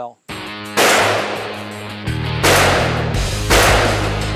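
Music with a steady bass beat starts suddenly, and over it a .454 Casull revolver fires three loud shots, about a second in, midway, and near the end, each one ringing away over about a second.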